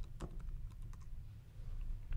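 Typing on a computer keyboard: a short run of light, separate key clicks, the first one the loudest.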